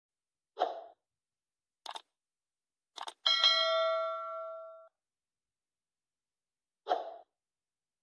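Sound effects of a subscribe-button animation: a short pop, two sharp mouse-style clicks, then a bell ding that rings for about a second and a half before fading, and another short pop near the end.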